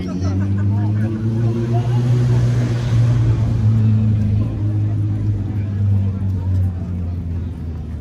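A large engine running close by, a low steady droning hum that builds over the first three seconds and fades away near the end.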